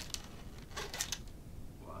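Guitar-string packaging being handled and opened: a few short crinkles and clicks of paper and plastic, the loudest cluster about a second in. A short spoken "wow" at the end.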